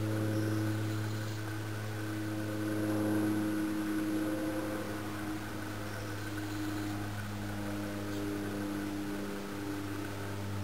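A machine running steadily: a low hum made of several tones that drift slightly in pitch.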